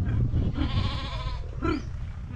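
Sheep bleating in a pen: one long, quavering bleat, then a shorter call near the end.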